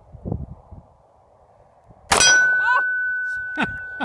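A single .45 ACP pistol shot about two seconds in, followed at once by the clang of a hit steel target plate, which rings on as one steady high tone past the end.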